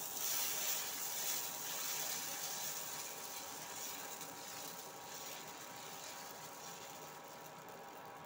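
Dosa batter sizzling on a hot cast-iron tawa as it is poured and spread in a spiral with a ladle; the hiss is loudest at first and slowly dies down.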